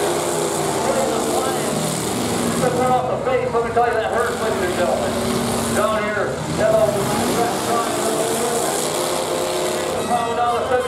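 Demolition derby cars' engines running hard at steady revs. Voices rise over them about three seconds in and again about six seconds in.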